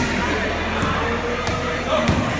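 Music with a crowd of voices talking and calling out over it, and a couple of sharp knocks about halfway through.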